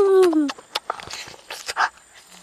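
A child's drawn-out, pitched "mmm" of relish while eating, its pitch falling as it ends about half a second in. Quieter lip-smacking and chewing clicks follow.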